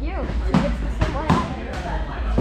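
Foam-padded sparring weapons striking in a bout, three sharp hits: about half a second in, just over a second in, and shortly before the end, with voices calling out between them.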